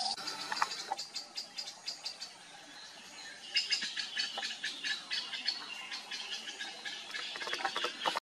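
Tawny-bellied babblers giving a rapid, irregular run of short high chips and ticks, which thicken into a busier chatter about three and a half seconds in.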